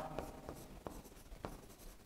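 Pen writing on an interactive display board's screen: a faint scratch with several light ticks as the strokes of the letters go down.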